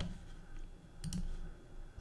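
A faint click about a second in, over quiet room tone.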